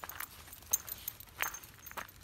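Footsteps crunching on a gravel path, a few slow, irregular steps.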